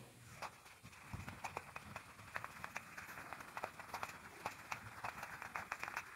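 Whiteboard eraser wiping the board: faint, quick, irregular scrapes and knocks as it is rubbed back and forth over the surface.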